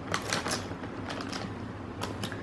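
Hands handling a cardboard takeaway box and small plastic tubs: a quick run of light crackles and taps, busiest in the first half second, with a few more a little past the middle.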